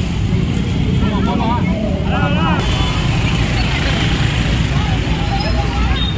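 Street ambience with a steady low rumble of motor scooters and traffic, and people talking in the crowd; voices rise briefly between about one and three seconds in.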